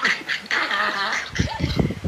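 A man laughing hysterically in high, squealing bursts, heard through a phone's speaker on a video call, with a low rumble near the end.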